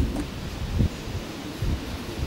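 Wind buffeting the microphone, a gusty low rumble with a faint rustle above it.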